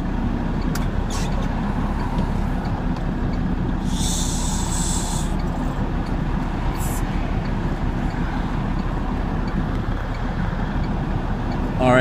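Straight truck's engine running steadily, heard from inside the cab. About four seconds in, a sharp hiss of air lasts just over a second, with a shorter, fainter hiss a couple of seconds later.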